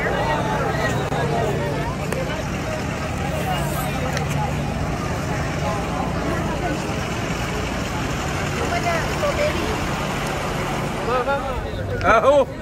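A vehicle engine running with a steady low hum, under the scattered chatter of several people's voices.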